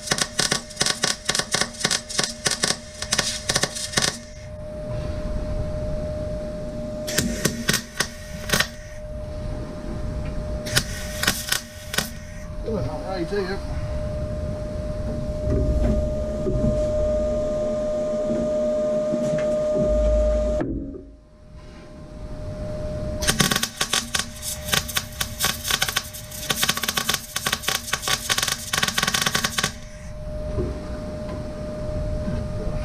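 Electric arc welder crackling as steel plate is tack-welded, in separate runs: one at the start lasting about four seconds, two short ones around seven and eleven seconds in, and a longer run of about six seconds near the end. A steady hum fills the gaps between runs and cuts out briefly just past twenty seconds.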